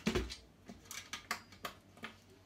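A cordless drill set down with a heavy knock, followed by about five light metallic clinks of small metal parts being handled.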